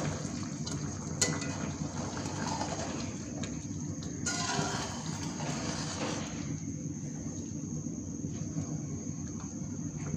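Rice being stirred into boiling water in a large metal pot with a long-handled spoon: the liquid sloshing and bubbling, with one light knock about a second in and a louder stretch of stirring between about four and six seconds.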